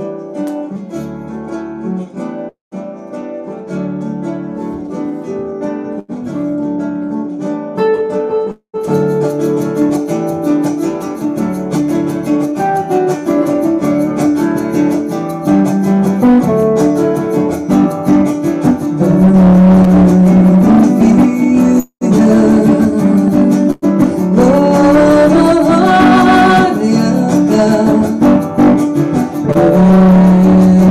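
Live duo music: a semi-hollow electric guitar plays a song opening, joined about nine seconds in by the steady rhythm of a hand-held egg shaker. A woman's voice comes in singing in Elvish in the later part, and the music grows louder.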